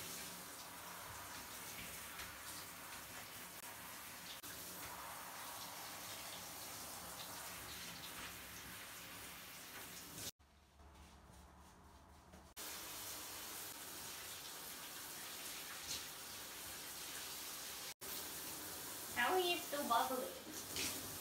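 Water running into a bathtub from a tap or shower, a steady hiss. It drops away for about two seconds midway, then resumes.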